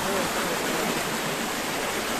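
Floodwater rushing across a street, a steady, even roar of fast-flowing water.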